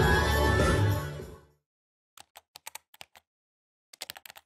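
Music fading out about a second in, then a quick run of about ten sharp typewriter key clicks used as a sound effect for text being typed out.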